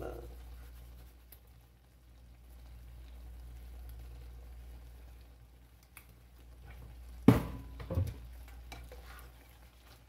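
A plastic spatula in a nonstick skillet of thick, creamy bow-tie pasta: two sharp knocks a little over seven seconds in, under a second apart, then stirring through the pasta, over a steady low hum.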